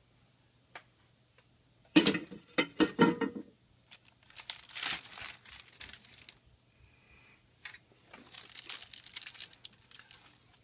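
Baking paper being peeled back and crinkled off a pressed disc of melted plastic shopping bags. The rustling comes in three bursts, the loudest about two seconds in.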